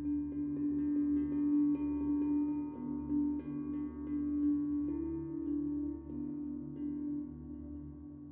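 Background music of long held, ringing tones with overtones. The main note steps up slightly about five seconds in.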